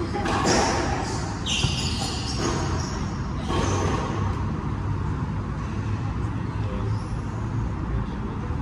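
Squash rally: sharp hits of rackets on the ball and of the ball on the court walls and wooden floor, most of them in the first half. The hits ring in the hard-walled court.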